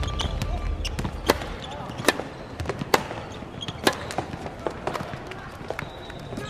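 A badminton rally: rackets strike a shuttlecock in sharp, crisp hits, about one a second, in an echoing indoor hall.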